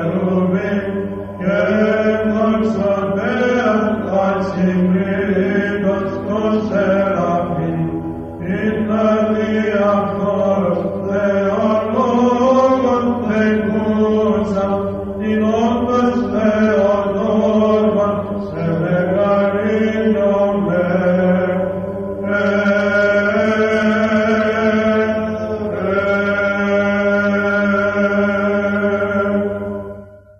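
Greek Orthodox Byzantine chant: a sung melody moving in long phrases with short breaks, over a steady low held drone (ison).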